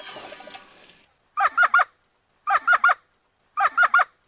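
A woman's high-pitched, honking laugh in three short bursts about a second apart, each of three quick notes. The fading tail of music and a sliding whistle-like effect fills the first second before it.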